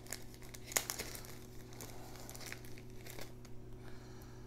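Small plastic component bag crinkling and crackling as it is handled and opened to get resistors out, with one sharper crackle a little under a second in. A steady low hum runs underneath.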